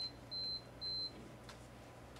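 Short, high electronic beeps of one steady pitch, about two a second, that stop a little over a second in.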